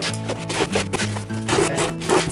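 A blade cutting along the packing tape on a cardboard box in short scraping strokes, over background music.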